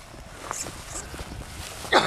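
Wind rumbling on the microphone with faint voices, and a loud voice starting just at the end. No motor or propeller is heard running.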